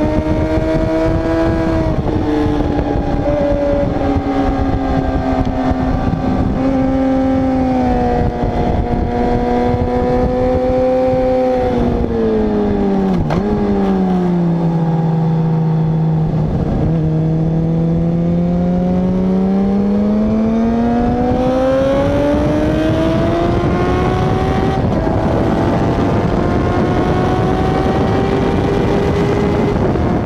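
Sport motorcycle engine at high revs heard from onboard, with wind rushing over the camera. The revs hold high, drop over a few seconds about halfway with two brief breaks as gears are changed, then climb steadily through the rev range again.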